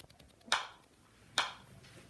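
Metronome clicking at a steady slow tempo: two sharp clicks a little under a second apart, the first about half a second in.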